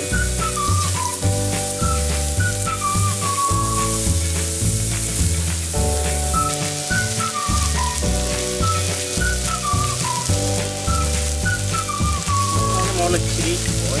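Spice-marinated chicken pieces sizzling steadily as they fry on a hot flat griddle. Background music plays over it: a high, gliding melody above low notes that change every second or two.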